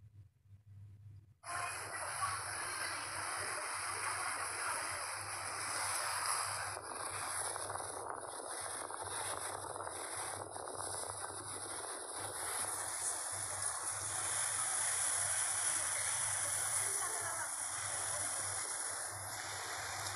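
Steady rushing hiss of water and wind past a moving ferry. It starts suddenly about a second and a half in, over a faint low hum.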